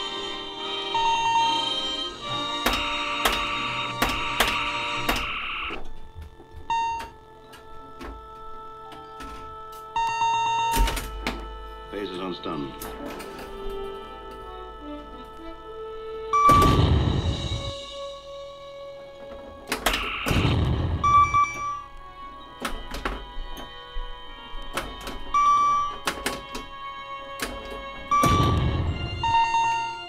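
Bally Star Trek pinball machine in play through a custom sound board: sharp solenoid clicks and thunks from the playfield under electronic bleeps and tones and background music. Three louder sweeping sound effects stand out about halfway through, a few seconds later, and near the end.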